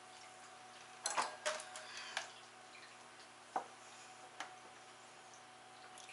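A handful of light clicks and knocks from a corn syrup bottle and a measuring cup being handled and set down, a cluster about a second in and single taps later, over a faint steady hum.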